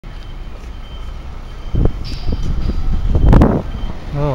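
Street traffic: vehicle engines running close by, with a brief surge about two seconds in and a louder one near the end.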